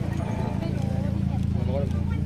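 Indistinct voices talking nearby, in two short snatches, over a steady low hum.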